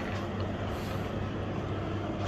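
Steady low hum with an even hiss underneath: room tone, unchanging throughout.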